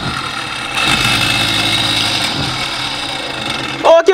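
Small DC electric motor of a home-built boat drive running on battery power and spinning its propeller shaft on the bench: a steady whine and hum that grows louder about a second in, then holds.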